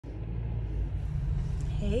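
Low, steady rumble of a car heard from inside its cabin, with a woman's voice starting 'Hey' just before the end.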